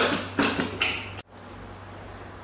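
Aluminium pressure cooker lid being closed and its handle locked, a few short metallic clicks and scrapes in the first second. Then an abrupt cut to a faint steady hiss.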